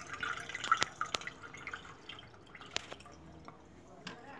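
Water dripping from a water-soaked sharpening stone into its tray: a faint trickle over the first second or so, then a few sharp single drops.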